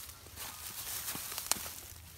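Tomato foliage rustling and brushing as garden twine is drawn along the row of plants, with a few light clicks and one sharp click about one and a half seconds in.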